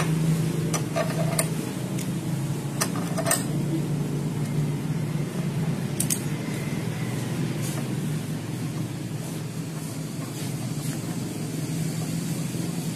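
Light metallic clinks and clicks as a steel brake caliper bracket and its bolts are handled and fitted by hand onto a motorcycle's front fork. There are several sharp clinks in the first few seconds and a couple more about six and eight seconds in, over a steady low background hum.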